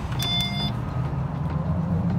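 A car's steady low rumble, with a short electronic beep about a quarter second in.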